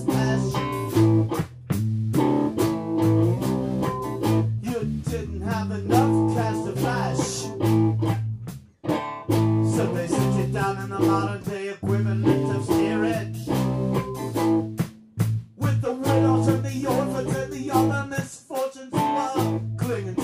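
Live band playing a song: electric guitar, bass guitar and drum kit, with a few short breaks in the rhythm.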